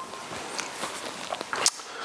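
A person's footsteps as he walks up to a worktable: a few faint steps and light knocks over steady room hiss, the sharpest one near the end.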